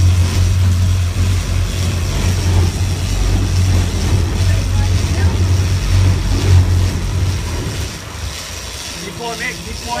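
A steady, loud low drone from a ship, either the fishing boat's engine or a cruise ship's horn, that drops away about eight seconds in.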